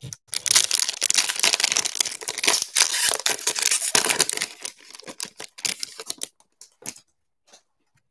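A foil trading-card pack wrapper being torn open and crinkled: a dense, loud crackle for about four seconds, then a few lighter crinkles that die away about seven seconds in.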